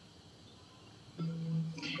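About a second of near silence, then a man's voice holding one steady, level hesitation sound, an "uhh" or hum, for about half a second.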